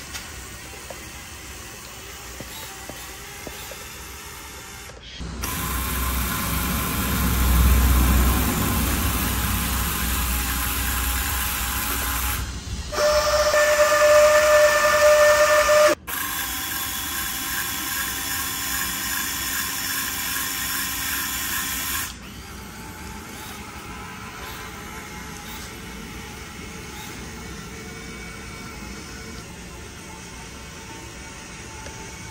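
Small electric motor of a homemade cardboard-and-wood model straddle carrier running with a steady whine, in sections that start and stop abruptly. The loudest stretch, a steady whine, comes just past the middle and cuts off suddenly.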